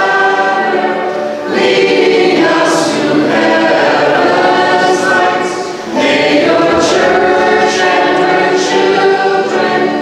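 A group of voices singing a liturgical hymn together in long sustained phrases, with brief breaks between phrases about a second and a half in and again about six seconds in.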